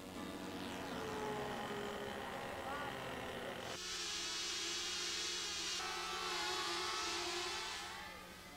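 Small model airplane engine running at a steady high speed with a loud hiss, cutting in abruptly about four seconds in.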